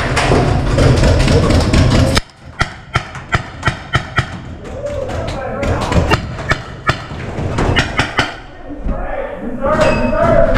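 Loud background music with a heavy beat cuts off suddenly about two seconds in. A series of sharp pops follows, two or three a second, irregular: paintball pistol shots, with voices near the end.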